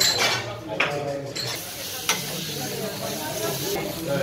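Strawberries frying in a hot steel pan on a gas burner: a steady sizzle that grows louder and fuller about a second and a half in, with a couple of sharp clicks of utensil on pan.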